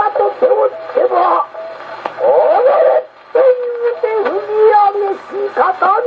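Male rōkyoku (naniwa-bushi) chanting in long, gliding, wavering phrases, played back from a 1912 acoustically recorded 78 rpm disc on an acoustic Victrola gramophone with an HMV No. 5A soundbox and cactus needle. The sound is narrow and dull-topped, like an old radio.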